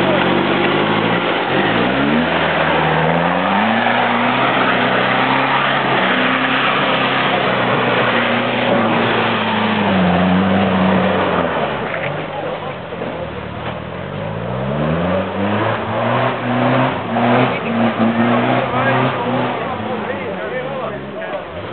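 Toyota Land Cruiser 70-series engine revving hard under load as the 4x4 claws up a muddy, snowy slope. The revs climb, hold high, drop away in the middle, then climb again and rise and fall.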